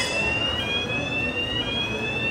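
Electronic warning signal at a miniature ride-train's crossing, warning of the approaching train: high steady tones that start suddenly and step in pitch about once a second.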